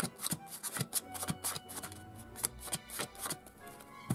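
Playing cards being dealt onto a tabletop: a quick, irregular series of light card slaps and clicks, a few each second, with soft background music underneath.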